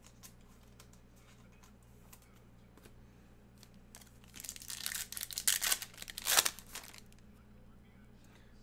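A trading-card pack's foil wrapper being torn open and crinkled by hand, a burst of crackly tearing that starts about four seconds in and lasts about three seconds.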